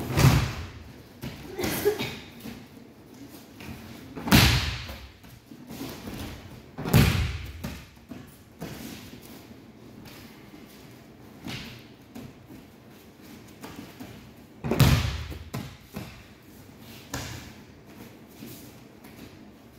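Bodies landing on padded dojo mats in aikido breakfalls: a series of heavy thuds every few seconds, the loudest right at the start and about four, seven and fifteen seconds in, with lighter knocks of footwork and landings between.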